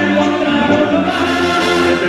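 Background music: a choir singing slow, held chords.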